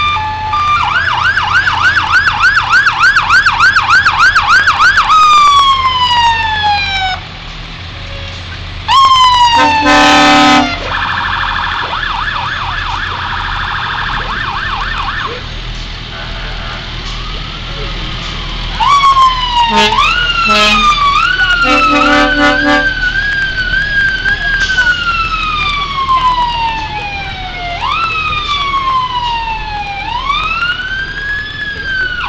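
Fire truck sirens sounding as the trucks pass: a fast warbling yelp, then long falling and rising wails. Loud horn blasts cut in about ten seconds in and again around twenty seconds.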